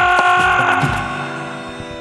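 Live Indian film-song accompaniment ending a phrase: a held note over keyboard and tabla strokes, the drums stopping about a second in and a sustained keyboard chord ringing on and fading.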